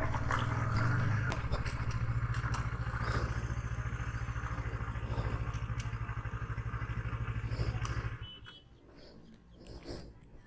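KTM 250 Duke's single-cylinder engine running as the bike rolls to a stop, then idling with an even low pulse, and switched off about eight seconds in.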